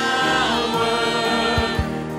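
Live gospel worship song from a small band: electric and acoustic guitars with a voice holding a long sung note.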